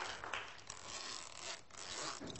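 A zip on a camouflage combat jacket being pulled, in several short noisy strokes.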